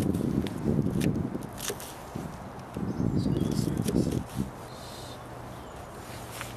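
Wind buffeting the microphone in gusts, a low rumble that dies down about four seconds in, with a few light clicks and scrapes of a knife cutting a vegetable.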